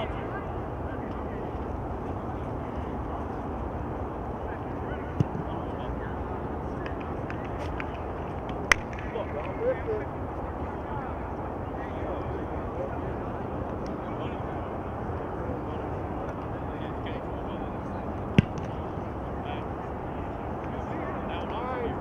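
Steady outdoor field ambience with faint distant voices, broken by three sharp single smacks about five, nine and eighteen seconds in.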